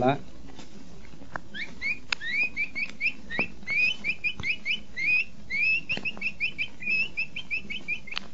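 Capybara calls: a long run of short, rising squeaky whistles, about two or three a second, beginning a little after the start. A few faint clicks are heard among them.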